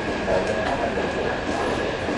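Electric commuter train, a JR East E531 series EMU, approaching along the line: a steady running noise with a thin high tone held throughout.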